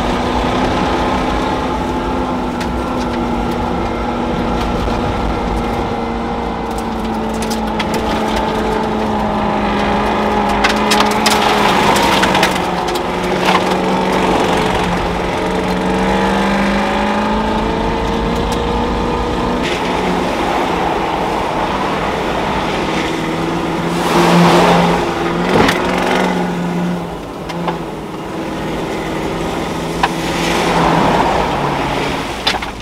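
Land Rover Discovery 1's Rover V8 engine heard from inside the cabin, driving steadily over gravel, its note dipping and rising around the middle, with scattered knocks and crunches from the stones. Near the end come louder rushes of splashing water as the vehicle drives into a shallow channel.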